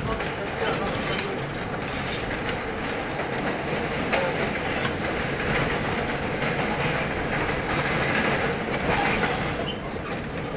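New York City Subway R42 train running at speed on an elevated steel structure, with a continuous rumble and wheels clicking over rail joints. Another train passes on the adjacent track partway through, and the noise grows brighter toward the end.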